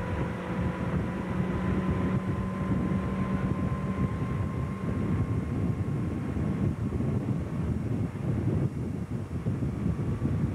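Motorboat engine running steadily at towing speed, heard from on board, mixed with wind buffeting the microphone and rushing water. The engine's steady hum weakens a little about four seconds in.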